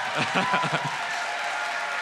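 Audience applauding and cheering, with scattered voices calling out in the first second.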